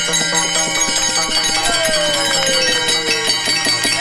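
Many pairs of brass taal hand cymbals clashed together in a fast, steady rhythm, their ringing overlapping, with a barrel drum keeping the beat; a single pitch glides downward about halfway through.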